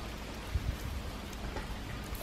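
Volga Wolfhound pup chewing and tearing at a whole raw chicken on straw: a steady crackly rustle of small clicks, with two low thumps about half a second in.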